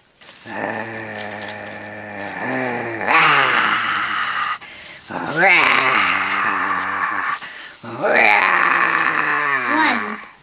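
Dinosaur roars: a series of long, low roars, several opening with a rising glide.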